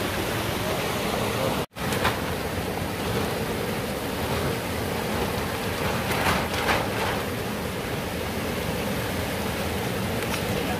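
Mountain stream water rushing steadily over rocks. The sound cuts out for a split second a little under two seconds in.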